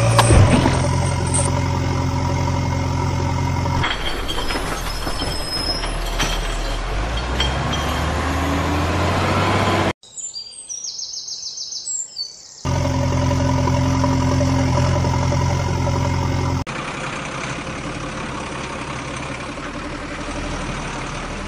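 Steady truck engine running sound, laid over in blocks that cut in and out abruptly. About ten seconds in it drops out for a couple of seconds, leaving only faint bird chirps, then it returns, and near the end it changes to a lighter running sound.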